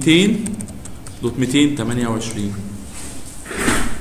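A man's voice speaking, with a computer keyboard typing short runs of keystroke clicks under it.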